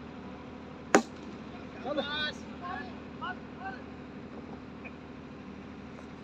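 A cricket bat striking a yellow ball once, a single sharp knock about a second in, followed by players shouting.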